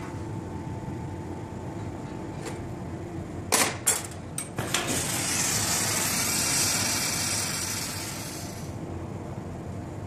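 A few sharp clacks of metal glassworking tools, then a rushing hiss that swells and fades over about four seconds, over the steady low noise of a glassblowing bench.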